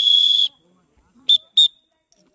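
A referee's whistle: a long steady high blast that cuts off about half a second in, then two quick short toots a little later.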